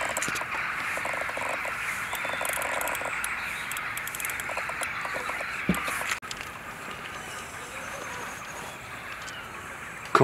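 A dense chorus of calling wildlife, with light clicking from a fishing reel and rod being handled in the first few seconds. The chorus cuts off suddenly about six seconds in, leaving a quieter background.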